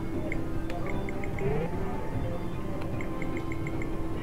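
Casino floor sound of slot machine tunes and chimes, with runs of short electronic beeps from a video poker machine as a new hand of cards is dealt, a quick series of about six near the end.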